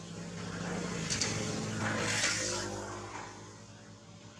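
A motor vehicle passing by: its engine hum and road noise build up, peak about two seconds in, then fade away.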